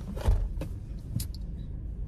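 A dull thump about a quarter second in, then a couple of light clicks, over a steady low rumble inside a car.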